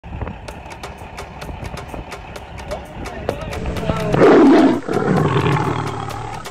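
A lion roaring, loudest about four seconds in, over a fast, regular ticking.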